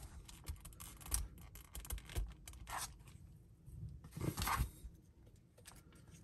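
Plastic accessory swords being slid into the holders on the back of an action figure: faint plastic clicks and scrapes, with a few short scraping strokes, the longest about four seconds in.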